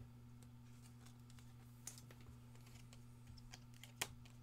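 Near silence: a steady low hum with faint, scattered light clicks.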